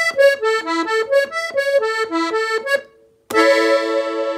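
Farinelli piano accordion playing a quick ornamental run of short melody notes, then, after a brief break about three seconds in, a loud full chord that is held.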